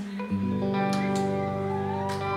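Live indie rock band holding a sustained closing chord, with many steady notes ringing together. The last sung note fades out just before the chord comes in, about a third of a second in.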